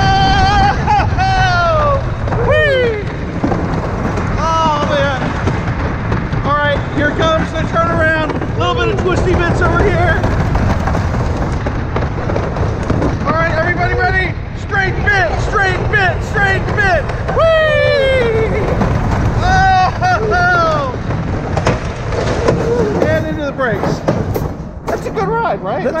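Wooden roller coaster train rumbling and clattering over its track at speed, under repeated whoops and yells from riders. The rumble eases near the end as the train slows into the brake run by the station.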